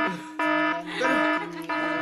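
Background music: an electronic melody of steady held notes, about two a second.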